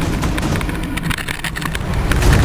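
Wind rushing over a mountain bike's mounted camera, with the bike clattering over a rough dirt descent in many small knocks.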